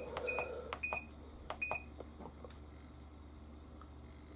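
Giantex portable washing machine's control panel beeping as its Process button is pressed repeatedly to step through the wash programs: about four short high beeps, each with a light click of the button, in the first two seconds.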